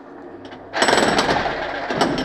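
Electric demolition hammer chiselling into brick and plaster, breaking into a fast, loud hammering under a second in.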